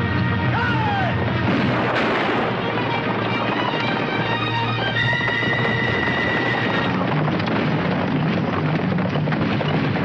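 Film score music over a battle sound mix, with a few sharp gunshots cutting through. The music holds a long high note in the middle.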